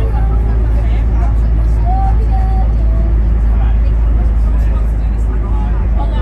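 Steady low rumble of a vehicle driving through a road tunnel, with indistinct voices over it.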